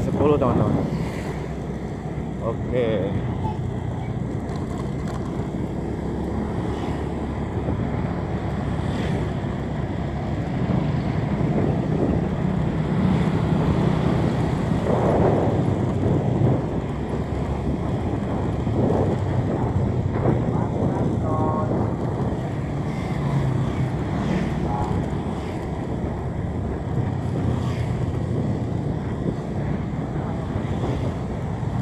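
Wind rushing over the microphone of a moving vehicle, over a steady low engine hum.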